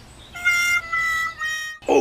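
A cartoon-style sound effect: a high, steady pitched tone that starts about a third of a second in and lasts about a second and a half, broken into a few short pieces and sinking slightly in pitch.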